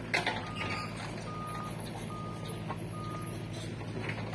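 Engine of a heavy earth-moving machine running steadily while its reversing alarm beeps four times at an even pace; a sharp knock sounds just after the start.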